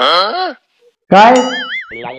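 Cartoon-style comedy sound effects edited over the scene. There is a short sound falling in pitch at the start, then about a second in a loud 'boing' whose pitch wobbles up and down as it rings on.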